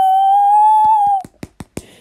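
A person's long, high-pitched held "ohhh" of shock that cuts off about a second in, followed by a few sharp clicks.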